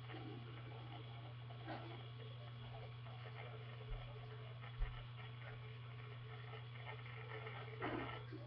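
Quiet room tone: a steady low hum with faint scattered background sounds, broken by two soft low thumps near the middle.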